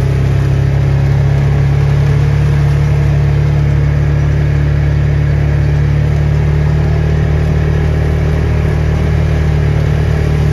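Motor vehicle engine running steadily at low speed as it drives, a constant low drone.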